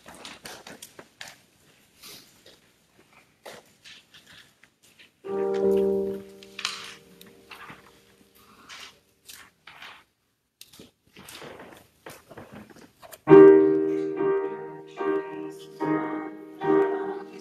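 Scattered faint rustles and small knocks, then a single piano chord about five seconds in that rings and dies away. Near the end the piano starts the introduction to the opening hymn.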